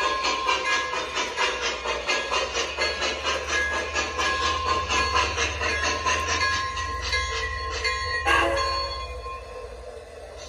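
Digital steam chuffing from the Protosound 3 sound system of an MTH Premier Empire State Express model steam locomotive, about two and a half chuffs a second over the low rumble of the running model. About eight seconds in there is a brief louder burst, after which the chuffing stops and the sound drops away.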